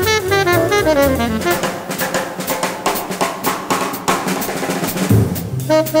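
Hard-bop jazz quartet: a descending tenor saxophone line ends about a second and a half in, leaving a drum-kit break of snare, bass drum and cymbals. The tenor saxophone comes back in with a held note just before the end.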